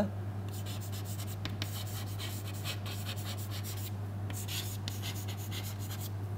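Chalk writing on a chalkboard: a run of short chalk strokes, over a steady low hum.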